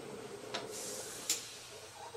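Faint rubbing hiss of a potter's hands working wet clay and wiping on a cloth, with two light clicks, one about half a second in and one just past a second.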